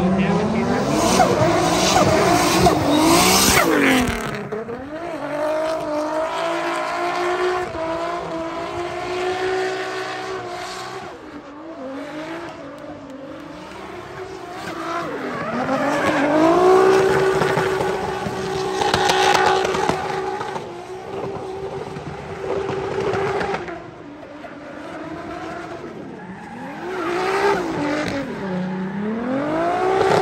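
Drift cars sliding sideways under power, engines at high revs and tyres squealing. The engine pitch dips and climbs again several times, and the loudest tyre noise comes in the first few seconds.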